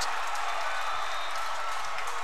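Steady crowd noise from a football stadium's stands, cheering and applause with no single sound standing out.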